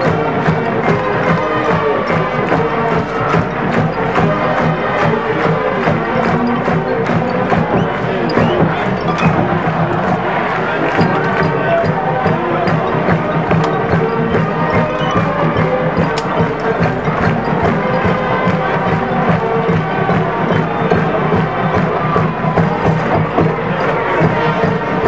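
College marching band playing: sustained horn lines over a steady drumline beat.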